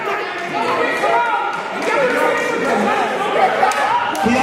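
A man's voice chanting into a microphone through a sound system in a large hall, with other voices calling out around it.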